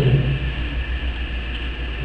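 A brief pause in a man's speech through a microphone and loudspeakers, filled by a steady low hum and hiss from the sound system and the room.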